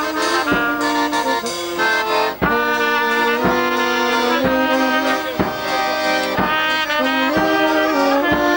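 A small traditional village band plays a tune: accordion, saxophone and trumpet carrying the melody over a bass drum struck about once a second.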